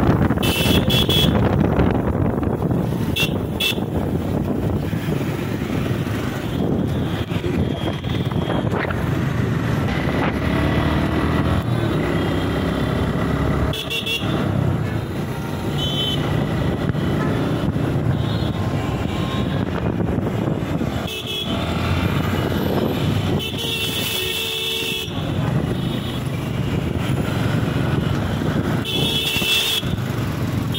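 A motorcycle riding through city traffic: engine and road noise run throughout, broken several times by short horn toots and one longer horn blast about three-quarters of the way through.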